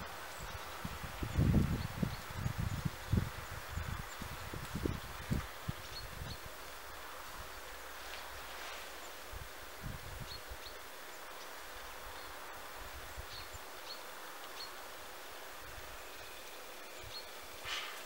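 Outdoor garden ambience: a steady hush with faint, scattered bird chirps. A run of irregular low thuds comes in the first few seconds, and there is one short sharp sound near the end.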